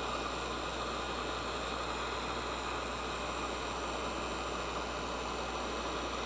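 Handheld electric heat gun running steadily, a constant fan hiss with a low hum, as it heats and shrinks adhesive-lined heat-shrink tubing.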